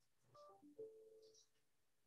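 Faint electronic telephone-style beeps: a few quick tones stepping down in pitch, then a longer steady tone held for under a second.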